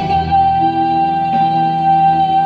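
Live band playing a ballad, heard from the audience, with one long high note held steady over the accompaniment.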